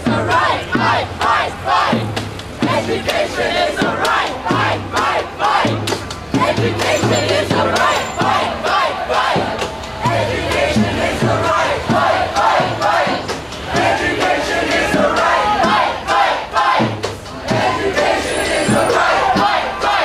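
A crowd of marching student protesters chanting and shouting, with many voices overlapping and a steady low beat about once or twice a second underneath.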